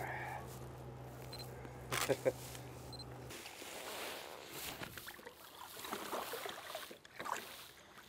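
Faint knocks and water sounds as a sturgeon is handled over the side of a kayak and lowered into the river, under a steady low hum that stops about three seconds in. A brief voice is heard about two seconds in.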